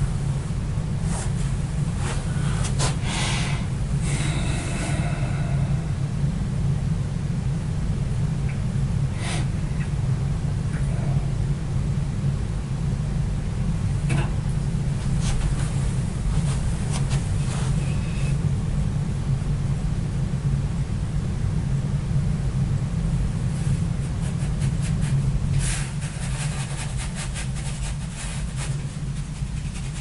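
A steady low hum runs under everything, with scattered light taps and scrapes of a paintbrush: working in a watercolor palette a few seconds in, one tap against the water bucket about halfway, and a run of quick brush strokes on paper near the end.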